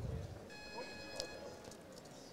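Quiet competition-hall ambience with a faint, steady, high electronic tone lasting about a second and a small click in the middle of it.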